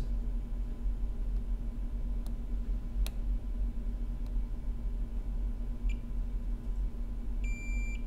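Multimeter beeping as its probes are checked against the image lines of an iPhone 6S logic board for shorts: a short high chirp about six seconds in and a half-second beep near the end. A steady low electrical hum runs underneath.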